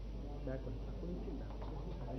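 Faint, indistinct murmuring of several voices in a crowd, with no chanting.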